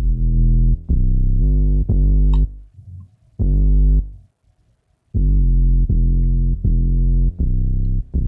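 Synth bass line from the beat's layered bass synths, playing deep plucked notes in short phrases with two brief pauses, its tone shaped by a tilt EQ with a lowpass filter.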